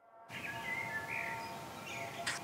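Outdoor ambience fading in from silence: a steady hiss with a few short bird chirps.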